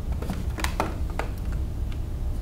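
Small sharp clicks and taps, about five in a second and a half, from hands handling plastic wire connectors on a circuit board, over a steady low hum.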